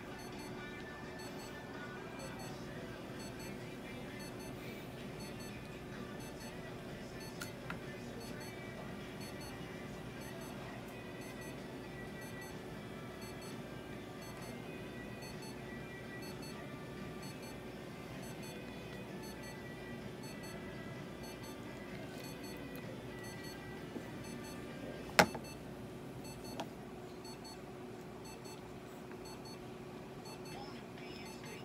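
Faint background music over a steady room hum with a constant low tone. A single sharp click about three-quarters of the way through is the loudest sound.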